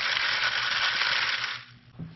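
Worm castings and bedding shaken through the wire-mesh screen of a plastic sifter, a loud gritty rattling hiss that lasts about a second and a half and then stops.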